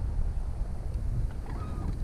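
Wind buffeting the microphone, a steady low rumble, with a faint short whine about one and a half seconds in.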